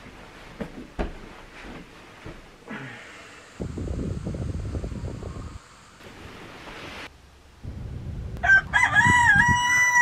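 A rooster crows once near the end, a long pitched call that dips once in the middle. Before it come soft rustling of bedding and stretches of low rumbling noise.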